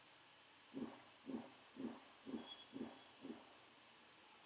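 Faint, rhythmic stirring of chopped brinjal in a metal kadai with a spatula, a soft scrape and toss about twice a second.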